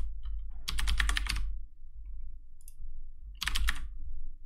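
Computer keyboard keys clacking in three quick bursts of several presses each, over a steady low hum.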